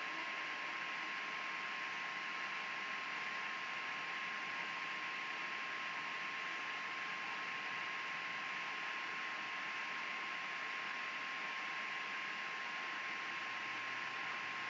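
Steady hiss with a thin, steady whine running through it; nothing else happens.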